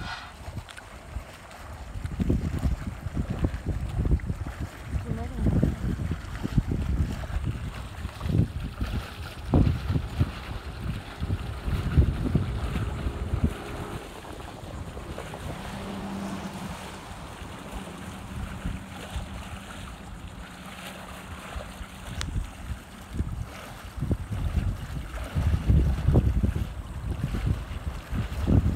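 Wind buffeting the microphone in uneven gusts, with a faint steady hum for several seconds in the middle.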